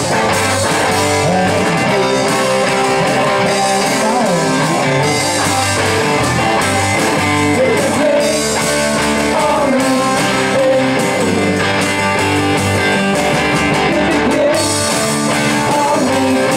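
Live rock and roll band playing: electric guitars and a drum kit, amplified through a PA, with a lead vocal over roughly the second half.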